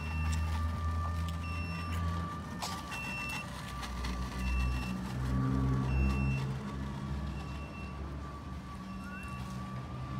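Self-propelled robot pallet wrapper running as it drives around the pallet: a low motor hum that swells and fades, a steady thin whine, and a short high warning beep repeating about once a second.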